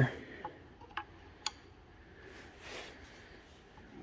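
Three faint, sharp clicks about half a second apart, then a soft scuff, as a non-metal cover on the engine is worked by hand and screwdriver where it hangs up on its studs.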